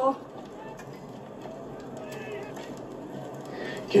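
Quiet, steady background ambience from a TV episode's soundtrack, with a faint voice.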